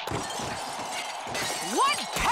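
Cartoon crash sound effect: a sudden shattering clatter that starts sharply and runs for about a second and a half, then a voice rising in pitch near the end.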